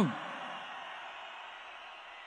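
Faint, steady crowd noise in a large indoor arena, with the echo of the amplified voice dying away at the start.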